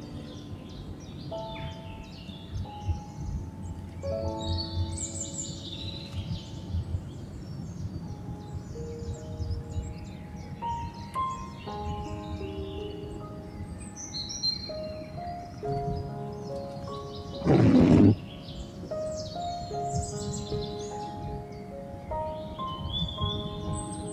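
Background instrumental music playing a slow melody of held notes, with birds chirping high above it. There is one short, loud burst a little past the middle.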